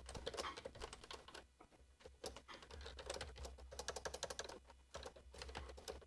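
Faint computer keyboard typing: quick runs of key clicks, with short pauses about two seconds in and again near five seconds.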